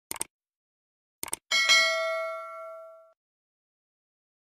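Subscribe-button sound effect: two quick mouse clicks at the start and two more a little over a second later. Then a notification bell dings once and rings out for about a second and a half.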